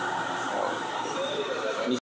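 Indistinct background voices over a steady noise bed, with no distinct machine event standing out.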